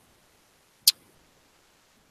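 One sharp click a little under a second in, against near-silent room tone.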